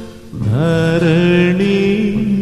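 Slow, chant-like singing with musical accompaniment: after a brief dip, a voice slides up into a long held note about half a second in.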